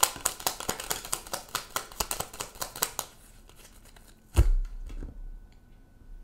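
Tarot cards shuffled by hand, a quick run of small card clicks and snaps for about three seconds, followed by a single dull thump about four seconds in.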